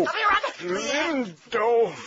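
A voice repeating "all righty" in drawn-out syllables that rise and fall in pitch.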